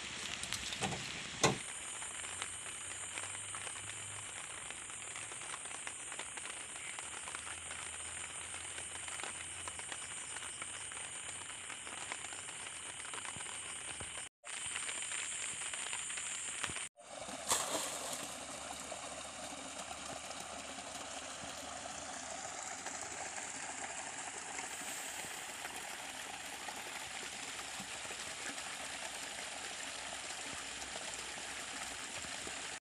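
Steady rain falling and pattering on a plastic tarp shelter, with a sharp knock about a second and a half in. The rain sound cuts out briefly twice around the middle.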